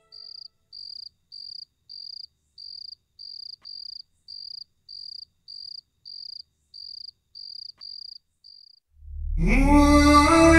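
Cricket chirping in an even rhythm of short, high chirps, just under two a second, as night ambience. The chirping stops near the end and music fades in.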